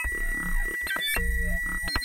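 Electronic synthesizer music: a steady high tone held throughout, with short stepping notes and low bass pulses that drop out and return in a repeating pattern.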